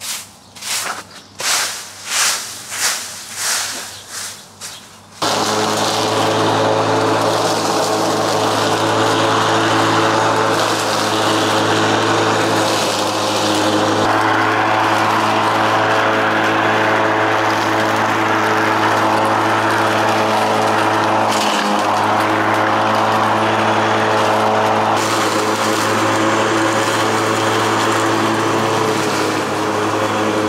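Stiff broom sweeping a concrete path, about eight brisk strokes. About five seconds in a small petrol engine comes in suddenly and runs steadily for the rest.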